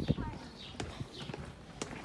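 Footsteps of a man carrying a heavy suitcase: sharp knocks about every half second.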